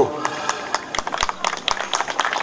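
Scattered applause from a small crowd, many separate hand claps.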